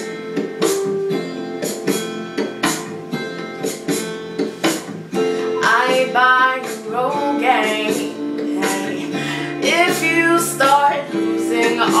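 Acoustic guitar accompaniment strummed in a steady rhythm, with a female voice singing the melody over it from about halfway through.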